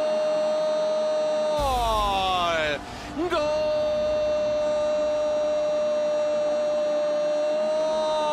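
A football commentator's drawn-out goal cry, "gooool", held on one steady note for a goal just scored. Near two seconds in the pitch sags as his breath runs out; after a short gasp he takes the long note up again about three seconds in and holds it to the end.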